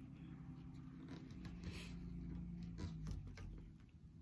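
Faint rustling and scraping of fabric and strong thread being handled and pulled tight while a knot is tied, with a few light scratchy strokes.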